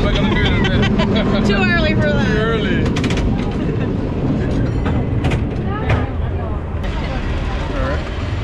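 San Francisco cable car riding along its tracks: a steady low rumble with scattered clanks and rattles, and people's voices mixed in, most in the first few seconds.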